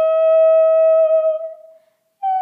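Woman singing a cappella, holding one long steady note that fades out shortly before the end.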